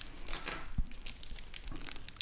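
Hands handling small parts at a workbench: light clicks and taps, with faint crinkling of a small plastic bag, and one soft low thump just under a second in.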